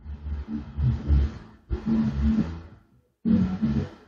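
Wind buffeting the microphone: a low rumble that comes in three gusts, with short breaks between them.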